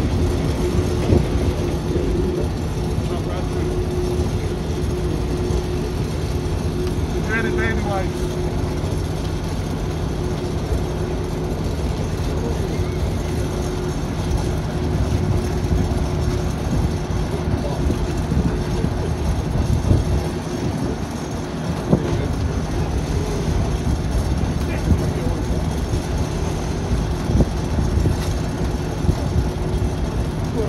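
Crane Envie Sithe submersible chopper pump running in its water-filled demo tank: a steady mechanical hum over a low rumble and churning water, with scattered small knocks, as a fibre rope fed into the tank is drawn in and chopped up.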